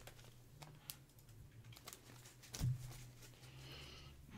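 Faint rustling and light ticks of plastic trading-card sleeves and bags being handled on a desk, with one soft knock about two and a half seconds in, over a faint steady low hum.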